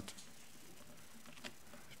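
A quiet pause in a room: faint steady hiss with a few soft clicks, the clearest about one and a half seconds in.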